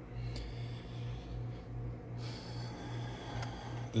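A low mechanical hum that pulses steadily about twice a second, with a couple of faint clicks.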